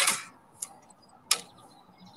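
Fencing hand tools knocking: a sharp clank as the post hole diggers are set down, a light click, then a second sharp clank a little over a second later as the next tool is picked up from among the others on the grass.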